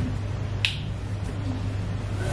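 A single sharp click just over half a second in, over a steady low hum.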